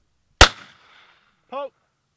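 A single shotgun shot about half a second in, its report dying away over the next half second. About a second later comes a brief pitched call, like a single shouted syllable.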